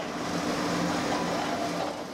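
Industrial bakery production line running: a steady mechanical hum and whir from the conveyor and dough-moulding machinery carrying shaped bread loaves.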